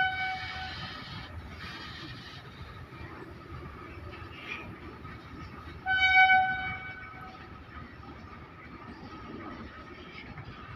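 Goods train of BTPN tank wagons rolling past with a steady rumble and a faint steady whine. A train horn gives two short blasts, one fading out right at the start and another about six seconds in.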